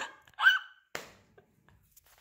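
A woman's laugh trailing off in one short, high-pitched giggle about half a second in, followed by a faint click about a second in.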